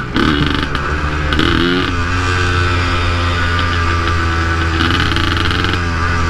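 Yamaha DT 180's single-cylinder two-stroke engine running as the motorcycle rides along; its pitch wavers a little in the first two seconds, then holds steady. This engine note is uncommon on city streets, since two-strokes are no longer made for road use.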